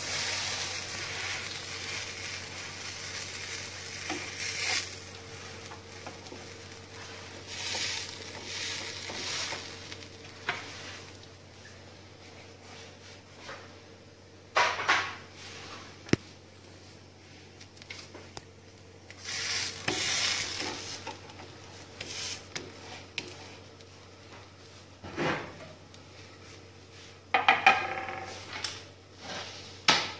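Butter sizzling under sandwiches toasting on a hot non-stick tawa, loudest just after the flip at the start and then softer. A wooden spatula now and then scrapes and knocks against the pan.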